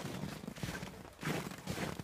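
Footsteps on packed snow, several people walking with irregular crunching steps.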